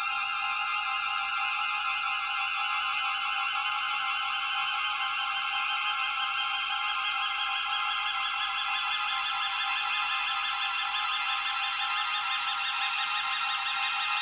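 Electronic film-score music: a dense, steady cluster of high sustained tones with almost no bass, one band slowly rising in pitch through the second half.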